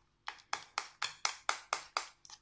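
A spoon rapidly stirring a thick, wet paste in a small bowl, tapping against the bowl's sides in a steady rhythm of about four clicks a second.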